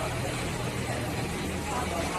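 Steady hum and rushing air of an automatic template sewing machine's twin side-channel (ring) vacuum blowers running under the work table, with background voices.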